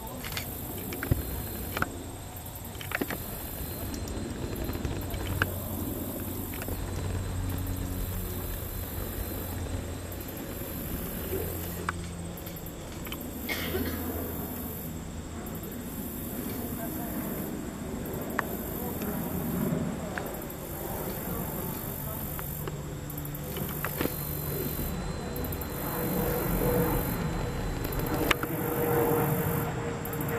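Outdoor marsh ambience: insects calling in a high chorus that pulses on and off about once a second, over a faint low hum, with a few sharp clicks.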